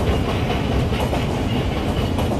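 Train running along the track, heard from on board: a steady, even rumble of the wheels on the rails.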